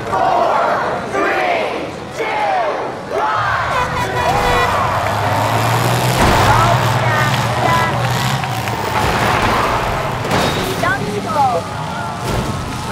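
Demolition derby car engines running and revving together under shouting, cheering crowd voices, with a sharp bang about six seconds in.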